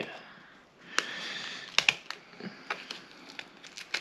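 Clear plastic geocoin holder being handled and opened by hand: scattered sharp plastic clicks with light crinkling, the busiest stretch about a second in.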